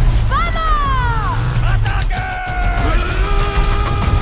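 Movie-trailer soundtrack mix of music and kart-racing sound effects, over a heavy steady bass. A long falling wail starts about a second in, and steady held tones fill the second half.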